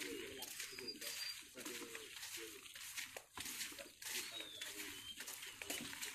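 Footsteps shuffling on a sandy dirt trail about once a second, with birds calling: low wavering calls and a few short high chirps.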